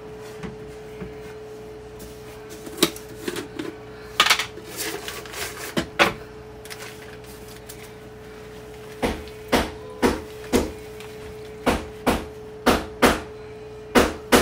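Hammer blows from floor work: a few scattered knocks, then a run of blows about two a second over the last five seconds, with a steady hum underneath.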